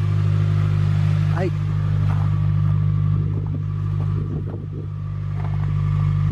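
Mitsubishi Lancer GTS four-cylinder engine idling steadily with a constant low drone.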